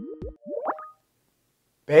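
Short plucky electronic tones, each note dropping quickly in pitch like a 'plop', ending about a third of a second in, followed by a brief rising swoop and then silence.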